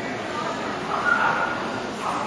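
A dog whining briefly, about a second in, over the steady murmur of voices in a large echoing hall.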